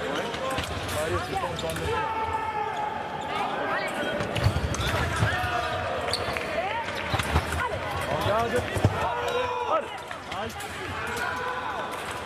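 Sabre fencers' shoes squeaking and thudding on the piste during footwork, with several heavy stamps, amid voices in the hall.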